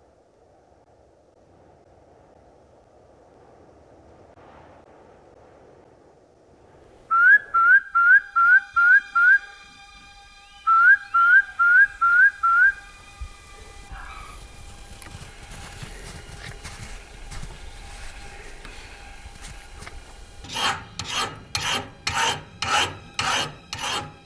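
Two loud runs of short whistled notes, each note hooking upward in pitch: six in quick succession, a pause, then five more. Near the end comes a regular rasping stroke about twice a second, as an axe blade is scraped against metal.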